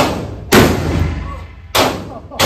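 Handgun shots at an indoor range: three sharp reports, one right at the start, one about half a second in and one near the end. Each is followed by a ringing echo off the range walls.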